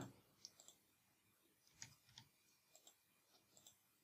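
Near silence with faint computer keyboard and mouse clicks, a handful spread through, some in quick pairs.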